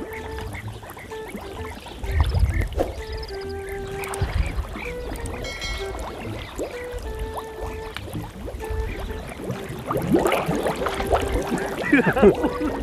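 Background music, a simple melody of held notes, over water sloshing and a low rumble on the microphone.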